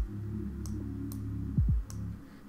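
A few sharp computer mouse clicks, one right at the start, one under a second in and one near the end, while hue-saturation curve points are being adjusted. Under them runs background music with a steady deep bass whose notes slide down in pitch.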